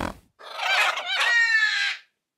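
A high, animal-like creature cry for the Unicorvid, a black unicorn-crow prop. It starts about half a second in, wavers at first, then holds and falls slightly in pitch before cutting off at the end.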